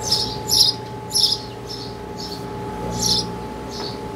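A bird chirping repeatedly in short, high chirps, about one every half second, over a steady hum.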